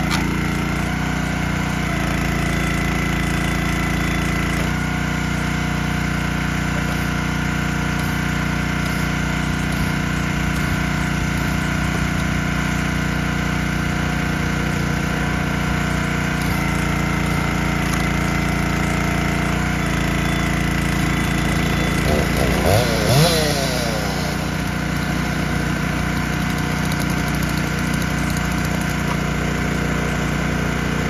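Small gasoline engine of a Champion 27-ton hydraulic log splitter running steadily while firewood rounds are split, its note shifting a few times. About twenty-two seconds in, a brief, louder burst of quick rising and falling pitch sweeps.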